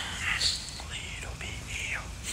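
A person whispering in breathy bursts, with no clear voiced tone.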